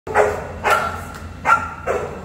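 Boerboel (South African Mastiff) barking: four short barks in under two seconds, unevenly spaced.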